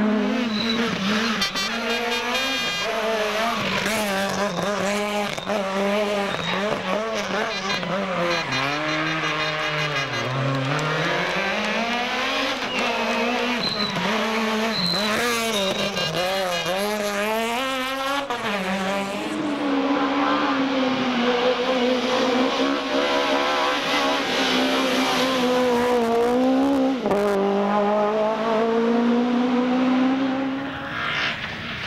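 Kit-Car and S1600 rally cars' high-revving four-cylinder engines driven hard, revs climbing and dropping sharply with gear changes and lifts, over several passes one after another.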